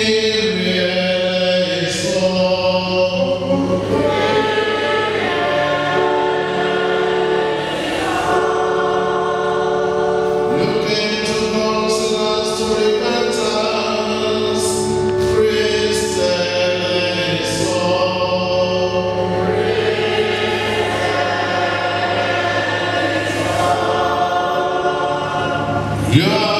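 Church choir singing a slow liturgical song with long held notes.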